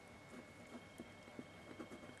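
Near silence: room tone with a few faint, irregular clicks.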